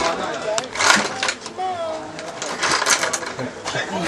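Indistinct voices in a small room, broken by several short bursts of rustling or clattering noise, one about a second in and a cluster near three seconds.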